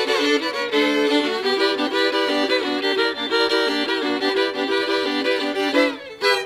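Two fiddles playing a tune together as a duet, one on a lower line of quickly repeated notes under the other's melody.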